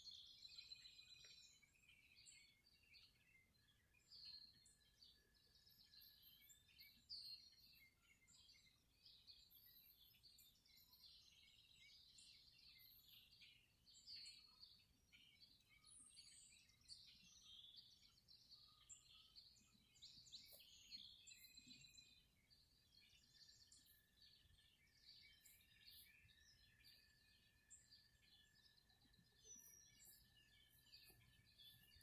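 Faint dawn chorus of several songbirds: many overlapping chirps and short calls throughout. A thin, steady high tone runs underneath for a few seconds early on and again through the last third.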